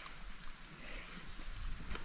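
Faint outdoor background with a steady high-pitched hiss and a couple of tiny clicks.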